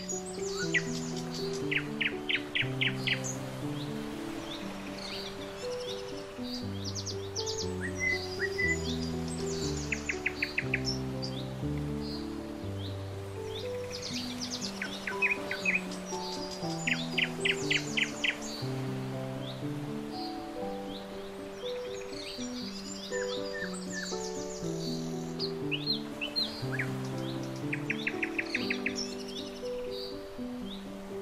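Slow background music of held, stepping chords, with birdsong over it: bursts of rapid chirps and trills that recur every few seconds.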